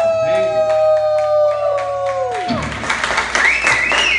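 A live rock band's final held note ringing out and stopping about two and a half seconds in, its pitch dropping as it ends. Then the audience cheers and claps, with a high wavering whoop above the applause.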